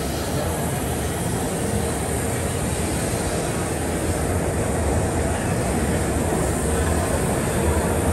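Steady machinery rumble and exhibition-hall noise with a faint constant hum on top, even in level, with no distinct events.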